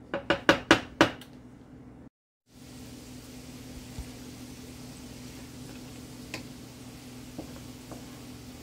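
A wooden spoon knocks against a ceramic-coated skillet about half a dozen times in the first second. After a brief cut, butter and diced onion sizzle gently in the pan over a steady low hum.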